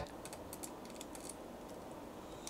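Faint, irregular clicking and scratching from a live lobster moving inside a plastic bag in a refrigerator.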